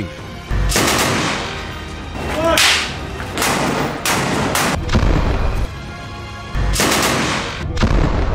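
Combat gunfire and explosions: an irregular string of sharp shots and blasts, several carrying deep thuds.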